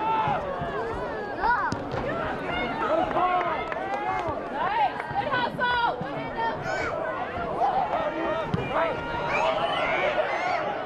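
Many voices shouting and calling out over one another at a soccer match, with no single speaker standing out: spectators and players yelling during play.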